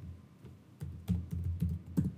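Computer keyboard typing: a quick run of about half a dozen keystrokes in the second half.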